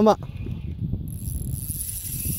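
Spinning reel being cranked to retrieve line on a hooked fish: a steady mechanical whirring with faint clicks from the gears and handle. A high, even hiss joins about a second in.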